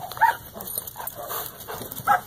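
A German Shepherd giving several short, pitched calls, the loudest about a quarter second in.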